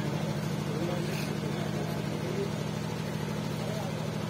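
Steady low engine-like hum, with faint voices talking in the background.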